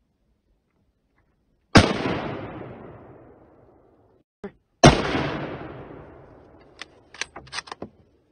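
Two gunshots from deer hunters firing at does, about three seconds apart, each followed by a long echoing fade. A few short sharp clicks come near the end.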